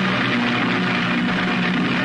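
Studio orchestra holding a loud, sustained chord under a bright, noisy wash of sound: the program's opening music.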